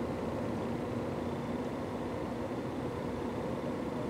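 Steady low background hum and hiss, unchanging throughout, with no distinct events: the room tone of the recording.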